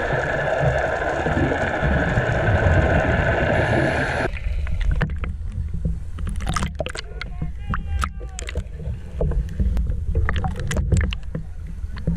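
Muffled underwater noise, a dense rush with a steady hum, for about four seconds. It then cuts off abruptly, leaving water slapping and splashing against the camera housing at the surface over a low rumble.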